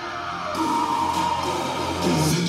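A song playing back through a pair of Kali Audio LP6 studio monitors as a sound test, with brighter high-end parts of the mix coming in about half a second in.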